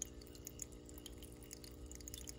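Hang-on-back aquarium filter running, its outflow falling into the tank water with a faint trickle and patter of small drips over a low steady hum.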